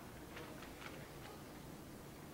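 A few faint, unevenly spaced ticks over low room tone.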